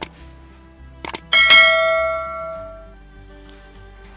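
Subscribe-button animation sound effect: a mouse click, then a quick double click about a second in, followed by a bright notification-bell ding that rings and fades out over about a second and a half. Soft background music plays underneath.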